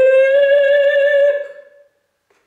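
A woman's trained operatic voice singing a Russian romance unaccompanied, holding one long note that dies away about a second and a half in.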